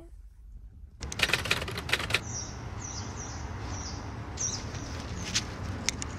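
Outdoor ambience of small birds chirping: a run of short, high, falling chirps repeated every half second or so, over a steady background noise. A cluster of clicks and knocks comes about a second in, with a few more later.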